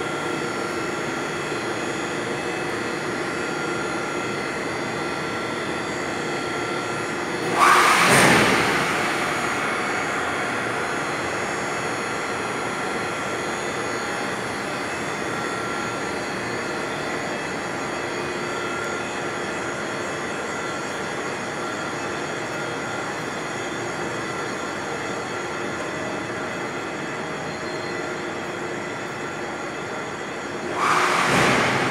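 Steady hum of an air-conditioning plant room's running pumps and machinery, with several steady tones held throughout. About eight seconds in, a sudden loud rush of noise fades away over a couple of seconds.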